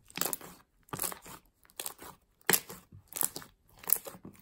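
A large fluffy slime being kneaded and squeezed by hands, giving short squishing, crackling sounds in irregular bursts, about six in four seconds.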